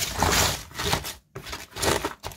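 Hands tossing salted, raw white cabbage pieces in a plastic basin: the crisp leaves rustle and crunch against each other. The sound breaks off sharply for a moment just over a second in, then returns as a few short rustles.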